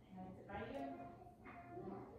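Faint, indistinct speech in the background, in three short stretches, during a quiet pause.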